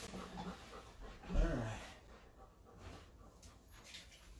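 A Golden Retriever gives one short vocal sound, falling in pitch, about a second and a half in. Before it, a towel rubs softly over the dog's damp coat.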